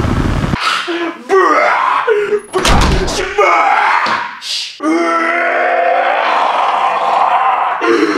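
A man groaning and yelling in short cries, then one long held scream from about five seconds in. A heavy thump comes about three seconds in, and a low rumbling noise cuts off about half a second in.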